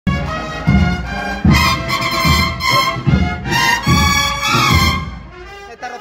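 Cornets-and-drums processional band (banda de cornetas y tambores) playing a march: massed cornets in sustained chords over a drum beat about every 0.8 s. The music dies down in the last second.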